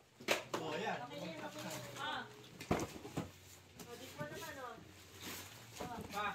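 Quiet background voices of people talking indistinctly, broken by a few brief sharp knocks or rustles, over a steady low hum.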